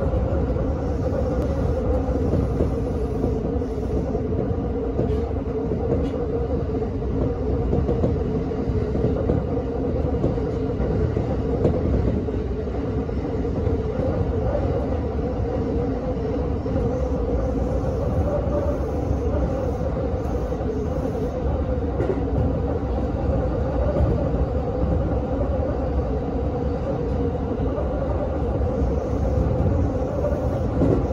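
Cabin noise of a JR West 225 series electric commuter train on the move, heard from inside the passenger car: a steady rumble with a faint, slightly wavering hum.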